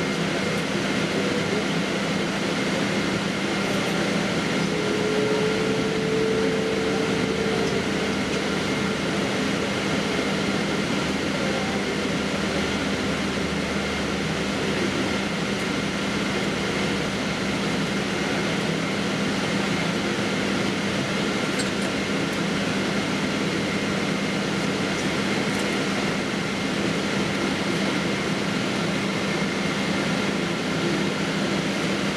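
Steady cabin noise of a Boeing 777-200ER taxiing, with engines at idle and cabin air rushing. A low hum and faint high whine tones hold steady throughout.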